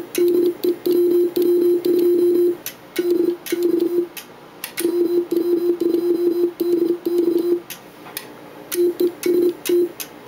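Elecraft K3 transceiver's CW monitor sidetone: a low-pitched tone keyed on and off in Morse code dits and dahs as CW is sent, with a few short pauses and clicks along with the keying.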